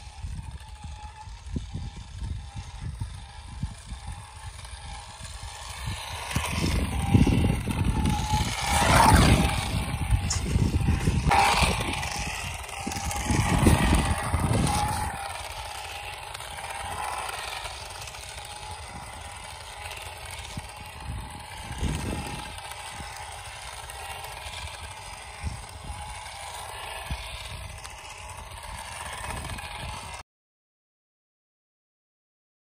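Small remote-control toy car's electric motor whining as it drives on asphalt. Under it is a low rumble that grows loud for several seconds in the first half.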